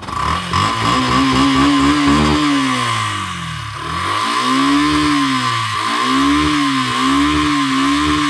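Yamaha FZS V3's air-cooled single-cylinder engine, heard at its exhaust, revved up and back down about four times with the throttle blipped, with a longer dip between the first and second revs.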